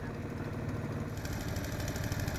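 Small engine running steadily, driving the belt-driven piston air compressor that pumps air down the hose to the diver's helmet. Toward the end it picks up more hiss.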